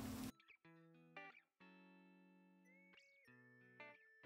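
A wooden spatula stirring couscous in a steel pot, cut off abruptly a fraction of a second in, followed by faint background music of plucked guitar notes.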